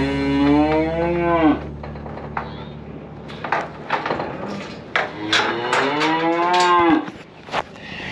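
Bull calf bawling twice, two long calls that rise and then drop sharply at the end. Between the calls come several sharp knocks and clatters.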